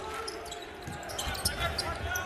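Live basketball court sound: the ball bouncing on the hardwood floor, short sneaker squeaks and faint players' voices. There is no crowd noise to cover them in the nearly empty arena.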